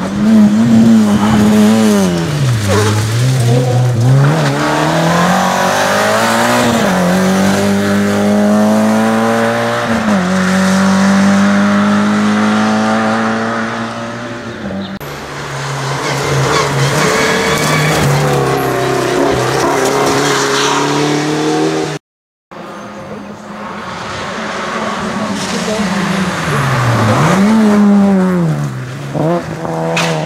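Rally car engines revving hard as cars pass in turn, the pitch climbing and then dropping at each gear change. The sound cuts out abruptly and briefly about three-quarters of the way through.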